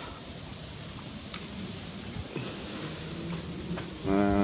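Quiet, steady outdoor background noise: a low rumble and a high hiss, with a faint click about a second and a half in.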